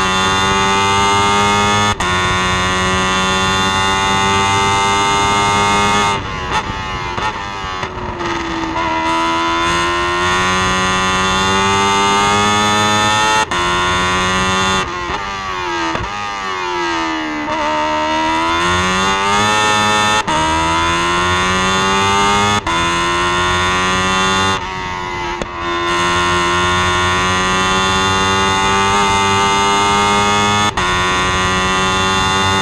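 Onboard sound of a single-seater racing car's engine at high revs, pitch climbing and stepping back at each quick upshift. It lifts sharply for braking with downshifts near 6 s and again near 25 s, and around the middle the revs fall to a low point and climb again out of a slow corner.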